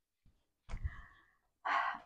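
A faint soft knock a little under a second in, then a woman's short, audible breath in just before she speaks.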